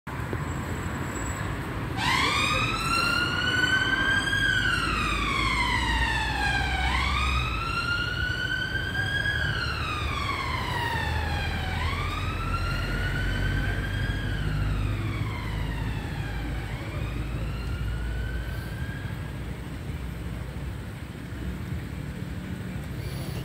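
Emergency vehicle siren sounding a slow wail, rising and falling about every five seconds, over the low rumble of passing street traffic. It starts about two seconds in and fades away over four cycles.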